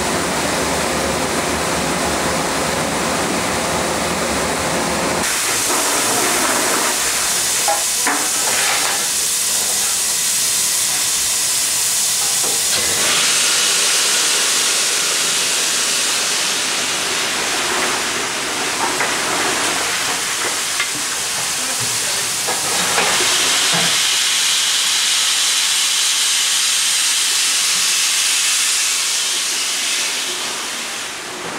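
BR Standard Class 9F steam locomotive hissing steam loudly and steadily, the hiss brightening and dulling several times, with faint knocks from coal dropping into its tender from the coaling chute.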